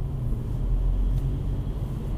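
Steady low rumble of a small car's 1.4-litre petrol engine and tyres at low roundabout speed, heard from inside the cabin.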